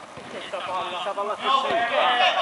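Several men's voices calling and shouting during a five-a-side football game, growing louder toward the end.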